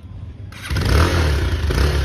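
Bajaj Pulsar 220F's 220 cc single-cylinder engine starting up about half a second in, then running with a low, steady exhaust note from its side-mounted silencer.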